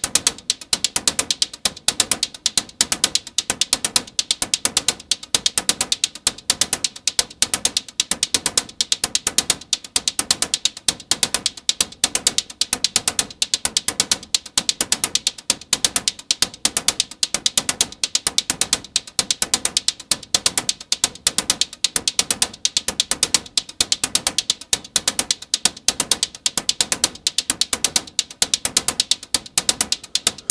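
Synthesized techno hi-hat loop from a modular synthesizer: a fast, even, unbroken run of sharp, bright ticks.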